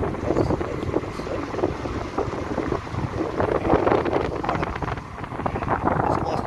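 A car driving on a wet road, heard from inside: steady road and tyre noise with wind buffeting the microphone in uneven gusts.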